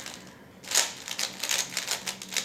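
A 3x3 puzzle cube's plastic layers being turned quickly by hand, a fast run of clacking clicks that starts about half a second in.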